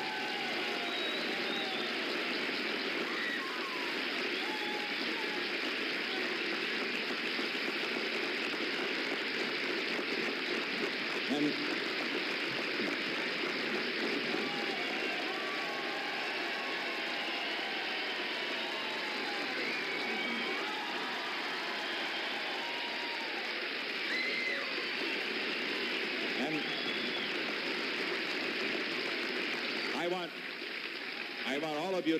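Large crowd applauding and cheering at length, a steady wash of clapping with many scattered shouts and voices mixed in.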